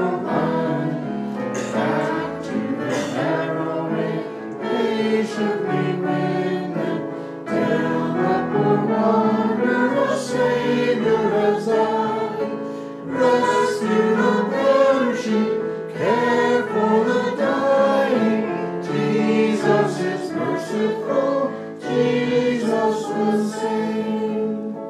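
A choir singing a gospel hymn in several-part harmony, with long held chords that shift from phrase to phrase.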